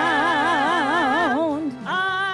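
A mixed vocal quartet singing a gospel song through microphones. A held note with a wide vibrato ends about a second and a half in, and a new note starts just before the end.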